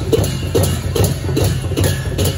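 Sakela dance music: a steady drum beat of about three to four strokes a second with cymbals striking on the beat, over a low steady hum.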